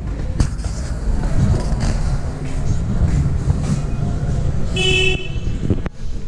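A vehicle horn honks once, briefly, about five seconds in, over a steady low rumble. A sharp knock comes just under half a second in.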